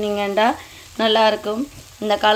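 Liver and onions sizzling in a wok as they are stirred with a wooden spoon. Over it sits a louder pitched, voice-like sound that comes and goes, dropping away about halfway through and again near the end.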